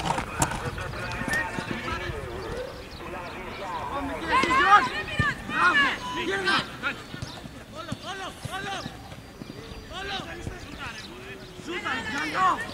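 Several voices shouting short calls across a football pitch during play, each cry rising and falling in pitch. The calls cluster around four to seven seconds in and again from about eight seconds to the end, over a steady outdoor background noise.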